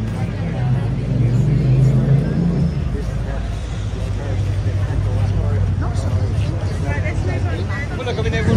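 Chatter of a crowd of bystanders, voices overlapping, over a steady low rumble.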